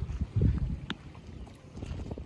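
Wind buffeting the microphone, a low uneven rumble that swells in gusts, strongest about half a second in.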